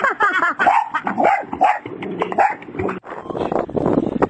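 A dog barking and yipping in quick succession while splashing in water. The calls stop abruptly about three seconds in, and a noisier, different sound takes over.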